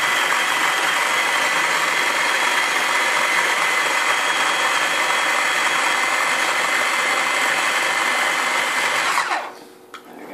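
Small electric mini chopper (push-top food processor) running steadily with a motor whine, blending chicken and canned food into a wet puree. About nine seconds in it is released and the motor winds down, its whine falling in pitch before it stops.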